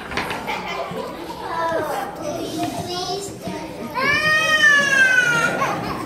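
Children's voices and chatter in a hall, with one long, high-pitched shout or squeal about four seconds in that falls slightly in pitch before it stops.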